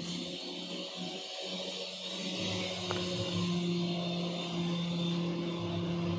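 A steady held tone, with a second, higher tone joining about three seconds in, over a soft hiss.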